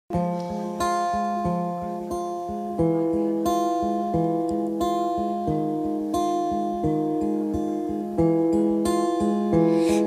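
Instrumental opening of an acoustic pop song: an acoustic guitar plays a steady strummed chord pattern over an electric bass, with no vocals yet.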